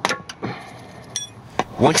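Steel wrenches clanking against a fuel filter and its flare nut as the corroded filter is broken free: a sharp clank at the start, a lighter clink, a short metallic ring about a second in, and another click just before speech.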